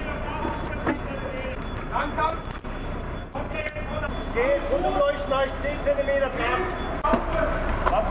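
Diesel engine of a Magirus HLF fire engine running low and steady as the truck reverses slowly, with people's voices calling over it, loudest around the middle.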